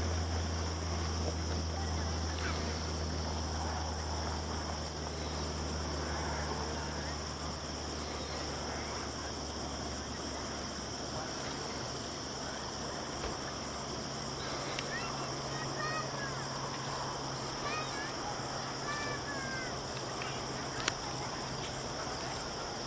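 Crickets trilling: a continuous, rapidly pulsing high-pitched chorus.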